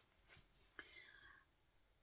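Near silence with a faint whisper or breathy murmur of a woman's voice, about a second long, starting just under a second in.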